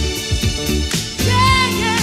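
Soul-funk music with a strong bass beat. About 1.3 s in, a woman's voice comes in and holds a note with vibrato.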